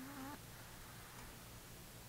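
A chihuahua gives one short, high whine right at the start, lasting about a third of a second, over a faint steady low hum.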